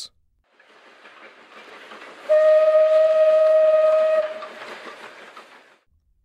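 Steam locomotive whistle sounding one long, steady, shrill blast of about two seconds, with a hiss that builds up before it and dies away after it.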